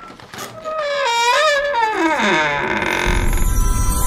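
Wooden door creaking open as a sound effect: one long, wavering creak that slides down in pitch. About three seconds in, music with a low bass comes in.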